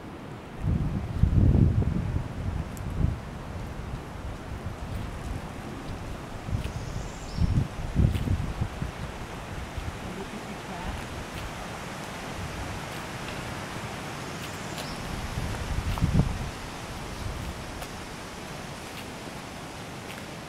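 Wind buffeting the camera microphone in three gusts of low rumble, over a steady outdoor hiss of breeze through the trees.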